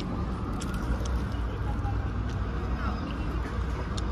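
Steady low rumble of downtown traffic and city background, with a few faint crisp clicks scattered through it.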